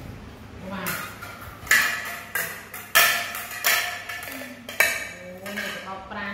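Ceramic plates clinking and clattering as they are set down on a tiled floor and against each other: a run of sharp knocks with short ringing tails, about one every half second to second.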